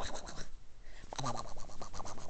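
Scratching and rustling right against an iPhone's microphone, a quick irregular run of scratchy clicks, with a brief low vocal sound about a second in.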